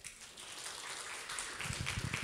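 Audience applauding: dense, light clapping that starts just as the talk ends and grows a little over the first second.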